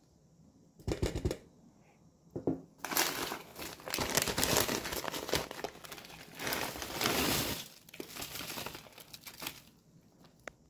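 Plastic bag of frozen peas crinkling as it is handled and opened, mostly from about three seconds in, after a few short knocks near the start.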